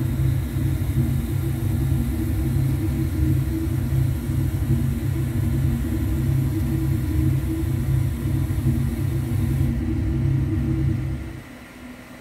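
Loud, steady deep rumble that dies away about eleven seconds in.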